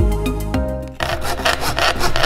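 Coping saw cutting through a thin plywood sheet in quick back-and-forth strokes, starting about a second in, after background music fades out.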